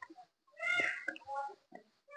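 A small child, just woken from sleep and cranky, fussing with a few short pitched cries in the background.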